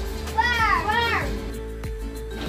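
A child's high voice calling out twice in quick succession, about half a second in, over steady background music.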